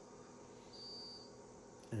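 A faint, steady high-pitched tone about a second in, lasting about half a second, from the Meade DS114's computerized GoTo mount as it nears its alignment position on Polaris.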